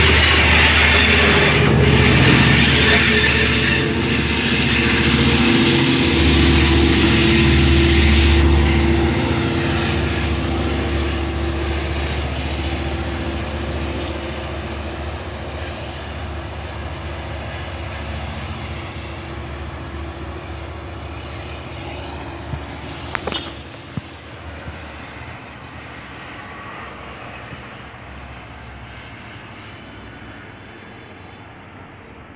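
Long Island Rail Road diesel train of C3 bilevel coaches, pushed by an EMD DE30AC locomotive, rolling close past and pulling away: a loud, steady diesel engine hum and rolling noise for the first nine seconds or so, then fading as the train recedes. A few sharp clicks about 23 seconds in.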